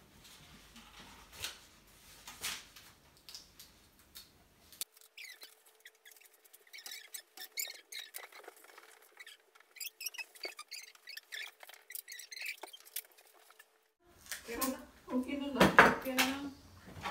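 Latex party balloons squeaking as they are handled, with short squeaks and small clicks and clatter of party items. A voice comes in near the end.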